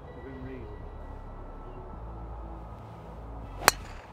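A golf driver striking a Kirkland golf ball off the tee: a single sharp crack near the end, with a short ring after it.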